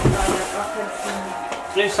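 Family voices with rustling plastic wrapping as a present is unwrapped; a crinkly hiss is loudest in the first half-second, and a child starts speaking near the end.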